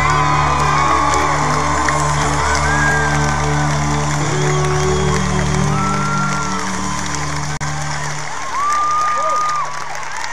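A rock band's final held chord ringing out over a cheering crowd with whistles and whoops. The band's sound dies away about eight seconds in, leaving the crowd cheering, with one long whistle near the end.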